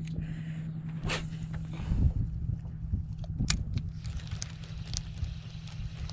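A small boat engine running steadily at low speed, a constant hum, with a few light clicks and knocks over it.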